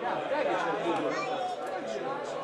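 Several people's voices talking and calling over one another, with no single clear speaker.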